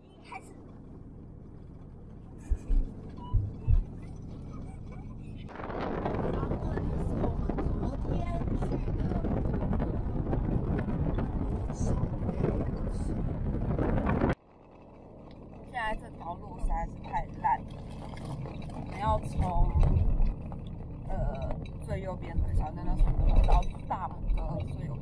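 Low rumble with a few thumps, then a loud, steady rush of wind on the microphone that cuts off abruptly, followed by the low rumble of a car cabin with short snatches of voices.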